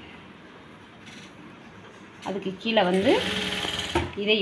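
Electric sewing machine starting up about three seconds in and stitching steadily, after a quiet stretch, with a woman's voice just before and over it.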